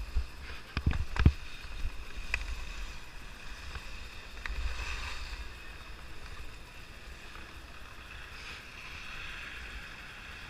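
Skis sliding and scraping over packed, groomed snow, with wind buffeting the camera's microphone. A few sharp knocks come about a second in.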